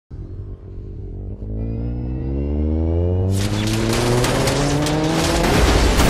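Film sound effects: a deep rumble with a whine that climbs steadily in pitch. About halfway in, a loud rushing blast full of crackles breaks in and keeps going: an explosion blowing down a corridor.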